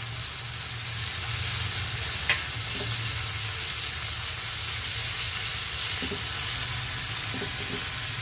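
Oil sizzling steadily in a frying pan over a high flame as chopped tomato goes in among frying long beans and is stirred with a silicone spatula. A single light tap comes about two seconds in.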